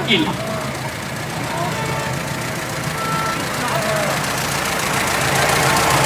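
Engine of a vintage motor vehicle running slowly, a steady low hum that grows louder as it approaches, with faint voices in the background.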